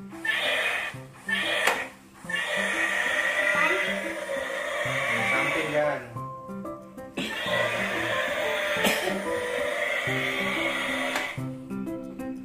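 Music with a stepping melody over the steady whir of a battery-powered dinosaur-head bubble toy's fan motor. The whir cuts out briefly about six seconds in and then starts again.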